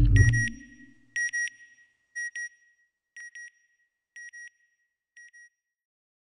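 Logo-sting sound design: a deep low rumble swells and dies away in the first second, overlaid by pairs of high electronic beeps, one pair about every second, six pairs in all, each fainter than the last like a fading echo.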